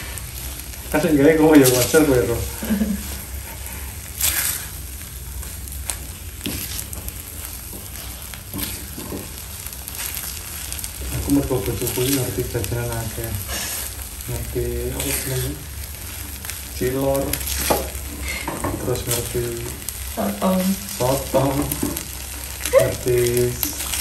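A thick dough-like mixture frying quietly in a nonstick pan, stirred and scraped with a silicone spatula. Voices are heard at times, and they are the loudest moments.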